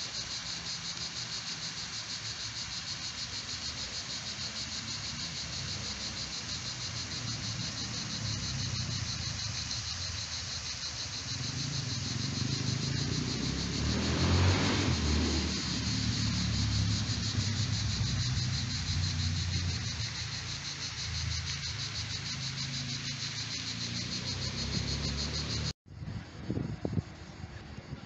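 Cicadas buzzing steadily in summer trees, a dense, rapidly pulsing high buzz, over a low rumble that swells about halfway through. The buzz breaks off suddenly near the end.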